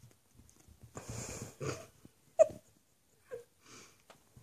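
Two puppies play-fighting: breathy snorting and snuffling, a sharp short yip about two and a half seconds in, then a smaller yip a second later.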